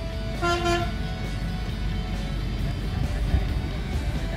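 A single short vehicle horn toot about half a second in, over steady low traffic rumble from the street and background music.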